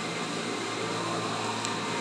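Steady machine hum with an even hiss, unchanging throughout: the running background machinery of the store.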